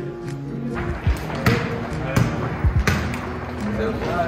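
Background music with about five sharp thuds and slaps on a hard surface, irregularly spaced between one and three seconds in, over a haze of voices and movement.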